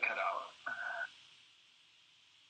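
Speech: a voice says a few words through a video-call link, with a flat, narrow telephone-like tone. About halfway in it stops, leaving only a faint steady hiss.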